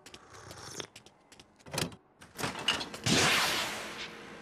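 Cartoon sound effects of a refrigerator door being opened: a few faint clicks and knocks from the handle and latch. About three seconds in comes a loud, steady rushing noise as the door swings open.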